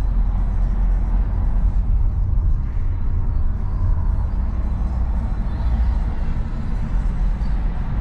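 Steady low road and engine rumble inside a moving BMW saloon's cabin.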